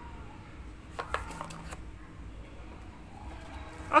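Quiet room noise with a few short faint knocks about a second in, from a cardboard box being handled in gloved hands.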